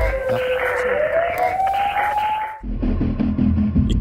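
A programme-ident transition sound: a whooshing swell with one tone gliding upward, which cuts off about two and a half seconds in. A steady, low background music bed then starts.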